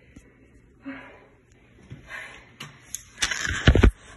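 Faint rustling and movement, then a burst of loud knocks and heavy thumps close to the microphone in the last second, like the recording phone or camera being handled.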